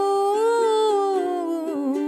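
A woman's voice holding one long sung note that rises a little and then slides down near the end, over light strumming on a ukulele.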